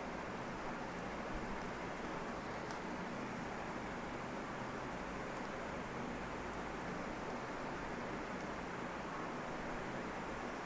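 Steady background hiss with a faint low hum: the room tone of a home recording, without speech.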